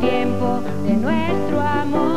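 A woman singing a pop song into a microphone over band accompaniment, her voice sliding up in pitch about a second in.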